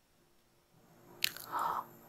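Near silence, then a faint mouth click and a short, soft intake of breath near the end.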